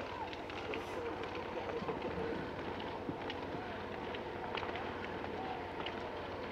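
Cross-country skis and poles on snow as biathletes skate past, with scattered faint clicks of pole plants and faint voices in the background.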